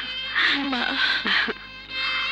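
A woman's high-pitched, coaxing voice in short bursts over soft background film music.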